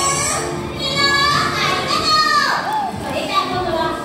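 High children's voices chattering and calling out over background music.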